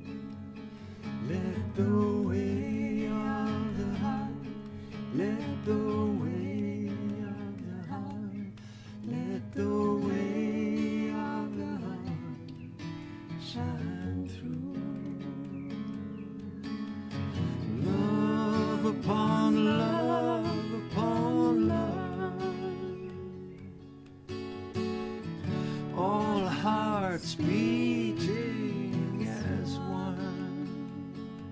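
Live acoustic guitar strummed under a slow, sung melody, the voice held in long notes with vibrato.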